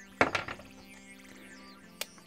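A small steel screwdriver bit dropping out of the screwdriver's weak magnetic bit holder and landing on the wooden workbench: two quick knocks, then a short rattle dying away. Faint background music plays throughout.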